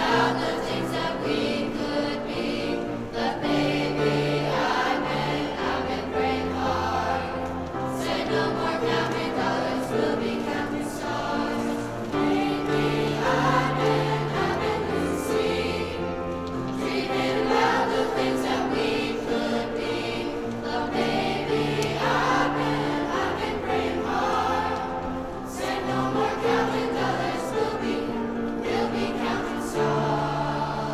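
Middle school choir singing with piano accompaniment, the voices moving over held low piano notes.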